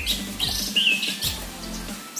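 Short songbird chirps: a quick rising chirp at the start and another brief chirp just before a second in.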